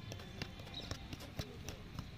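Two footballs being juggled: irregular soft taps as the balls bounce off feet and thighs, about every third of a second.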